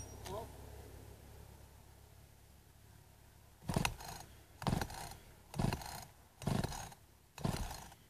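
Small two-stroke chainsaw being pull-started on full choke: five quick yanks of the starter cord, about one a second, starting about three and a half seconds in. The engine does not catch.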